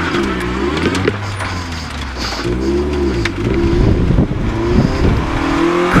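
Rally car's engine heard from inside the cabin, its revs rising and falling several times as the driver works the throttle and gears through the stage.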